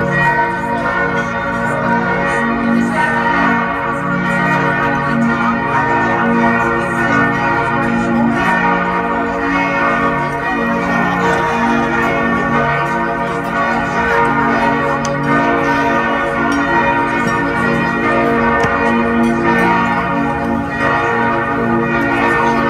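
Several large church bells, those of Speyer Cathedral, ringing together in a continuous full peal, with their tones overlapping and pulsing.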